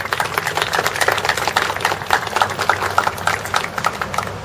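A small crowd applauding with a dense patter of claps that swells at the start and fades out just after the next speaker reaches the podium.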